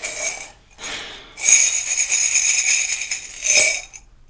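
Light metallic jingling and clinking, a short stretch at the start and a longer one from about a second and a half in, with a brief louder burst near the end.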